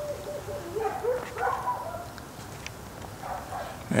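Neighbourhood dogs barking, several calls in the first second and a half, then quieter toward the end.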